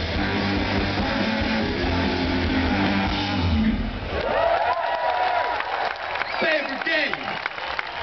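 Rock band playing live, electric guitar, violin, bass and drums, with the song ending about three and a half seconds in. After that, a festival crowd cheers, with loud whoops and shouts.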